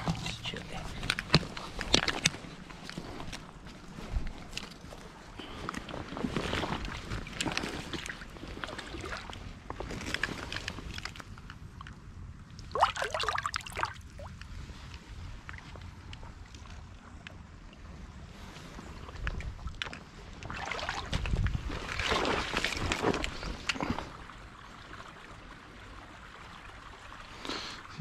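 Irregular splashing and sloshing of hands in shallow creek water as a brown trout is held in the current and let go, with bursts of water noise coming and going.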